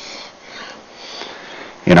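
Soft breath noise close to the microphone, a quiet hiss that swells and fades twice, before a man's voice begins speaking near the end.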